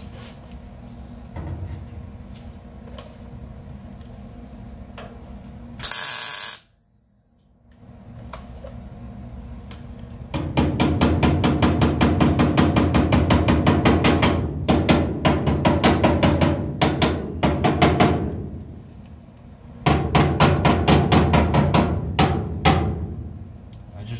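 MIG welder running beads on steel sheet-metal panels, a rapid steady crackle in two runs: one of about eight seconds starting ten seconds in, then a shorter one of about three seconds near the end. A short loud noise burst comes about six seconds in.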